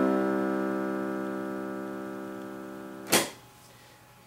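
Electronic keyboard in a piano voice holding a C octave struck just before, the notes dying away slowly. A short noisy burst about three seconds in ends the sound.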